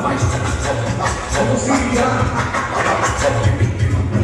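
Live rap music played loud through a PA system, with a heavy pulsing bass beat.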